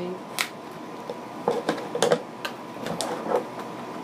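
Scissors cutting open a cardboard package: a string of about nine sharp snips and clicks at uneven intervals, some close together.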